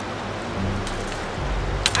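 Fast river rapids rushing steadily below a waterfall.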